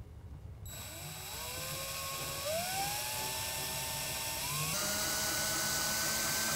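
Cordless drill driving a self-tapping screw through a metal angle bracket into a pickup's bed cap. The motor whine starts under a second in, climbs in pitch in steps, and holds a steady pitch near the end.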